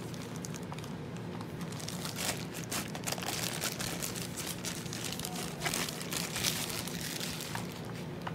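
A thin clear polyethylene bag crinkling and rustling as a slim DVD drive is slid out of it: a dense, irregular run of crackles that is busiest in the middle.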